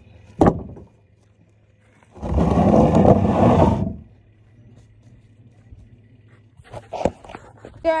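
A heavy log drops into a wooden trailer bed with a single sharp thump. About two seconds in comes a loud, harsh noise lasting nearly two seconds, and a few knocks of wood follow near the end.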